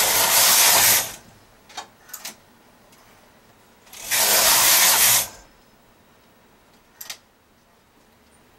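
Knitting machine carriage pushed across the needle bed twice, each pass a noisy slide of about a second, while working reverse short rows. A few light clicks come between the passes and once more near the end as needles are moved.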